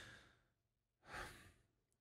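Near silence with a single faint breath from a man at a close microphone, about a second in, lasting under half a second.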